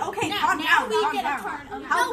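Speech only: several girls' voices chattering over one another.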